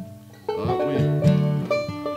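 Banjo and acoustic guitar picking a few separate notes, starting about half a second in after a brief lull.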